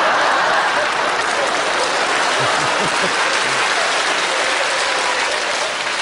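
A large audience applauding steadily in response to a comedian's punchline.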